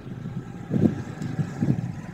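Street traffic noise picked up on an outdoor reporter's microphone: a low, steady rumble of vehicles with a couple of soft swells.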